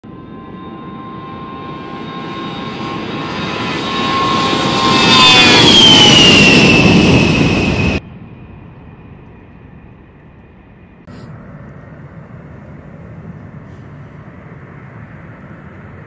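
A-10 Thunderbolt II's twin turbofan engines: a high whine and rush growing steadily louder as the jet comes close, the whine dropping in pitch as it passes. About halfway in the sound cuts off abruptly to a much quieter, steady engine noise of a jet farther off, which steps up a little a few seconds later.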